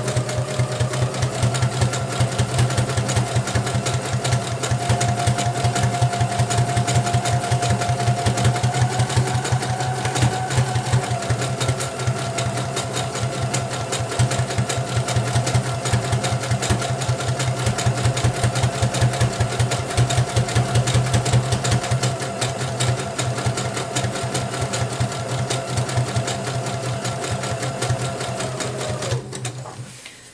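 Brother electric sewing machine running steadily: rapid needle strokes over a constant motor whine. It stops about a second before the end.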